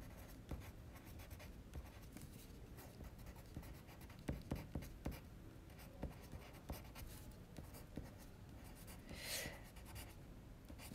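Faint scratching of a Caran d'Ache Luminance coloured pencil writing words on sketchbook paper, in short strokes. A few firmer strokes come about four to five seconds in, and there is a brief soft rustle near the end.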